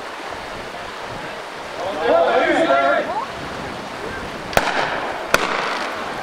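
Two gunshots from reenactors' blank-firing guns, about three-quarters of a second apart near the end, over the steady rush of a fast mountain creek. A man shouts about two seconds in.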